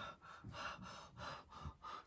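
Faint, quick breathing: a string of short breaths, a few each second.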